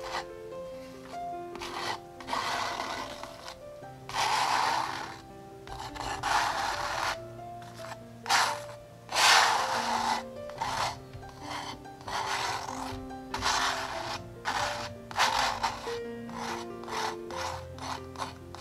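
Steel palette knife scraping and spreading thick wet acrylic paint across a canvas, in repeated strokes each lasting under a second, coming quicker near the end.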